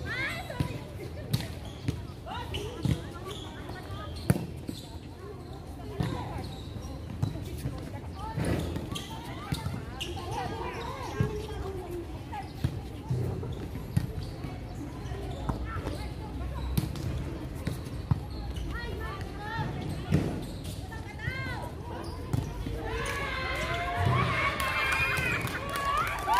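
Outdoor volleyball play: a ball being struck by hands and forearms, sharp slaps at irregular intervals a second or more apart. Players' voices call out between hits and grow busier near the end.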